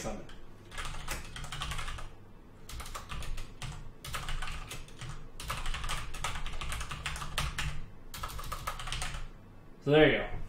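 Typing on a computer keyboard: quick runs of key clicks in several bursts with short pauses, stopping about a second before the end.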